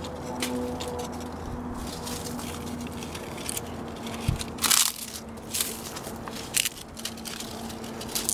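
Dry leaves and fig-tree branches rustling and crackling as ripe figs are picked by hand, with a few sharper crackles after about four and a half seconds.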